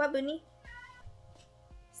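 A house cat meowing: one short, loud call at the start, with a rising then falling pitch.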